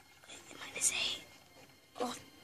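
A brief whisper, about a second in, between quiet pauses in children's counting.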